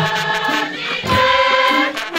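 A large mixed choir singing together in held, chant-like phrases, with hand drums beating underneath.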